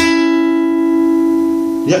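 Ovation Standard Balladeer acoustic-electric guitar: a string is plucked with the fingers, and its note rings out together with the thumbed bass note sounding before it, both slowly fading.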